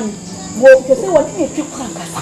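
Crickets chirping in a steady high drone, under a voice crying out in short distressed exclamations, loudest about a second in.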